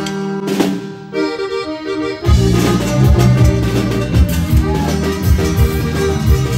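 Live band music led by a Gabbanelli accordion playing held chords and short phrases; about two seconds in, bass and drums come in on a steady beat and the music gets louder.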